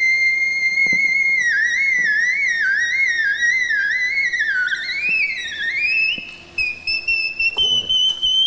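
A woman singing in the whistle register: very high, pure, flute-like notes. It opens on a held note, breaks into a run of quick up-and-down turns, then climbs and settles on an even higher sustained note near the end.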